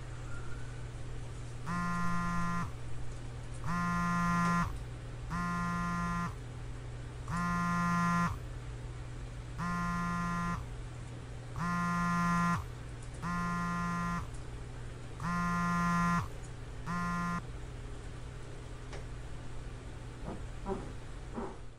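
A mobile phone vibrating for an incoming call: nine buzzes, each just under a second long, about two seconds apart. The last buzz is shorter, and the buzzing stops a little before the end.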